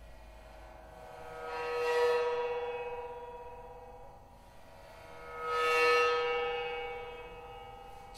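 Dream Chau tam-tam bowed on its edge, sounding twice. Each stroke swells up over about a second and then slowly fades, with a rich array of steady overtones above a strong low note.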